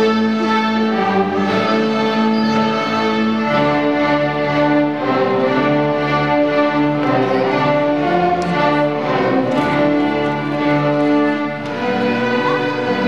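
Student string orchestra of violins and cellos playing held, sustained notes, with lower notes coming in about three and a half seconds in.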